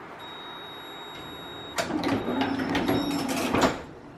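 Düwag N8C tram's door-closing cycle: a steady high warning beep, then about two seconds in the folding passenger doors swing shut with a loud mechanical rush and a string of knocks, ending in a final clunk shortly before the end.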